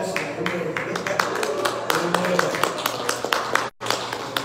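A man's voice talking indistinctly, with many irregular sharp clicks scattered through it. The sound cuts out completely for a split second near the end.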